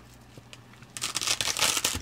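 Reflective grow-tent divider fabric crinkling as a hand grips and pulls at it, starting about a second in as a dense run of crackles.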